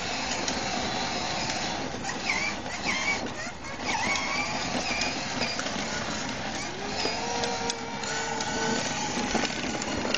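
Battery-powered Kawasaki KFX ride-on toy quad running: its small electric motor and plastic gearbox whir while the hard plastic wheels roll and rattle over the concrete sidewalk.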